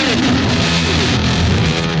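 Rock music led by loud electric guitar, with a note bending down at the very start.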